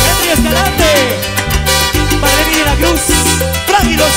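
A live cumbia band playing: trumpets and trombone carry a gliding melody over a steady electric bass line and hand-drum and percussion rhythm.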